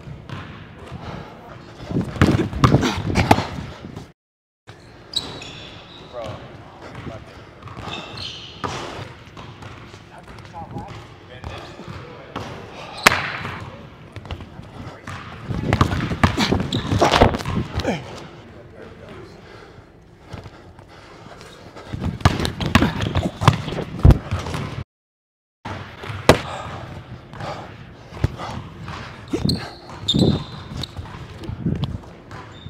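A basketball dribbled and bounced on a hardwood gym floor during one-on-one play, heard as clusters of sharp thuds. The sound drops out twice, briefly.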